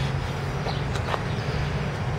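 A steady low hum, with a few faint brief ticks around the middle.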